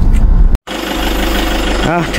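A vehicle driving on a dirt road, heard from inside: a loud, steady low rumble that cuts off abruptly about half a second in. A quieter steady engine hum follows.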